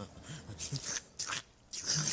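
A man slurping soup in a few short, wet slurps, spooning it from a bowl and then drinking straight from the bowl.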